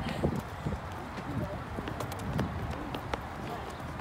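Footsteps of several people walking and running on asphalt, a scatter of quick shoe scuffs and taps.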